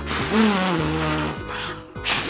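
A person blowing hard through two fingers in the mouth, trying to finger-whistle: a long breathy rush of air with no clear whistle note, a failed attempt. It stops just before two seconds in. Background music plays under it.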